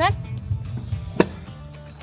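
A single sharp metal click from an adjustable weight bench's pull-pin backrest adjuster, about a second in.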